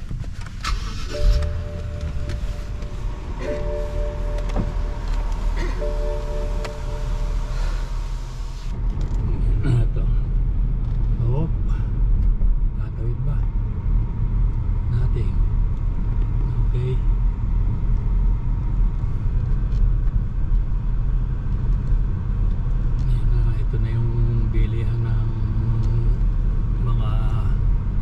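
Car interior: engine and tyre rumble heard from inside the cabin as the car drives along a city street. The low rumble grows heavier about nine seconds in. A few held tones sound over it in the first eight seconds.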